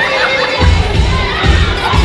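Audience of children shouting and cheering, many voices squealing at once, over music with a recurring low beat.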